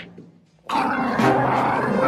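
A loud animal-like cry, typical of a cartoon sound effect, starts suddenly about two-thirds of a second in, after a brief near-silent gap.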